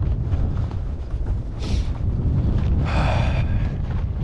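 Strong wind buffeting the microphone, a steady low rumble, with a brief hiss about a second and a half in and a short breathy rustle about three seconds in.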